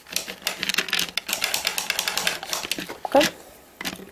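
Plastic Lego bricks and Technic parts clicking and rattling against each other as they are handled, a quick run of many small clicks for about three seconds.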